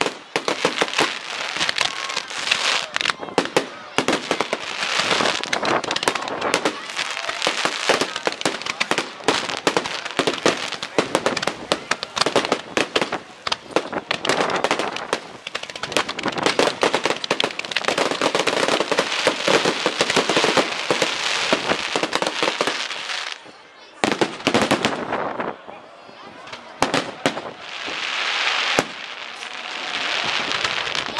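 Fireworks display: dense, continuous crackling and bangs from bursting shells and rising comets. The noise dies down a little past three quarters of the way through, then builds again.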